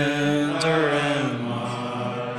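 A group of men's voices singing a Christmas carol together, holding long notes that slowly glide and grow gradually quieter.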